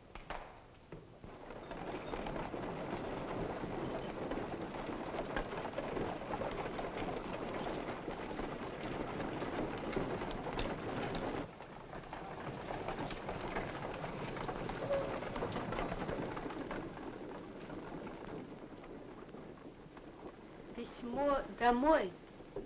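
A column of soldiers and horse-drawn carts on the move: a dense mixed murmur of many voices, footsteps and wheels. It starts about two seconds in, dips about halfway and thins out toward the end. A single voice rises briefly near the end.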